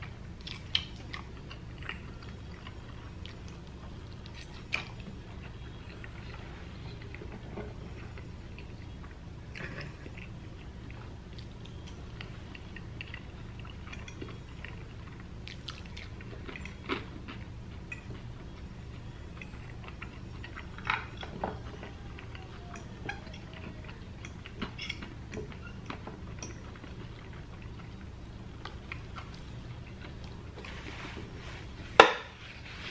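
Close-miked chewing and wet mouth sounds of a person eating cheesy taco lasagna, with scattered sharp clicks of a metal fork scraping and tapping the glass baking dish, over a steady low hum.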